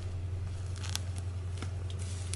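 Faint rustles and a few light clicks of hands handling a fabric and lace pocket book, over a steady low hum.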